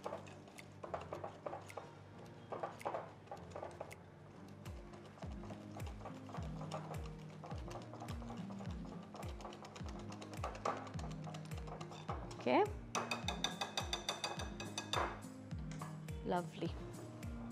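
Wire whisk beating cake batter in a glass bowl, with quick light ticks and scrapes against the glass, over background music whose steady beat comes in about four seconds in.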